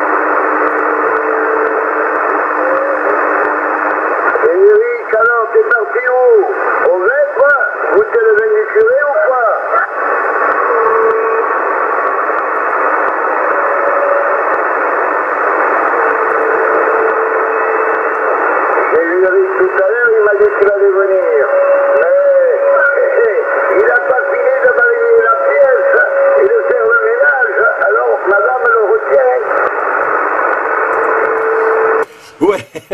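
Yaesu FT-450 transceiver's loudspeaker receiving CB channel 27 in upper sideband: a steady hiss of static in which a weak, garbled voice of a distant station comes through about five seconds in and again from about twenty seconds in, with short steady whistles from other carriers on the channel.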